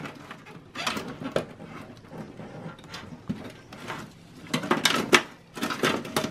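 Power supply cables rustling and their plastic connectors clicking as they are handled and plugged into a computer's optical drive power socket, with a run of sharper clicks about five seconds in.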